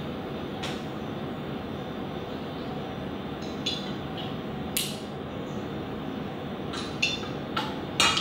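Light clinks of a metal measuring spoon against a glass olive-oil bottle and a stainless steel mixing bowl as oil is measured into the bowl: a handful of short, sharp clicks, the clearest about five seconds in, over a steady background hiss.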